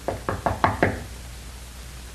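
Knocking on a door: a quick run of about six raps within the first second.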